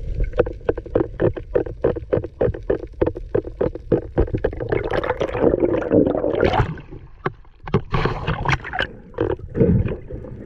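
Underwater sound picked up by a diver's camera: a rapid run of sharp clicks, about four a second, then gurgling, rushing water noise from movement through the water.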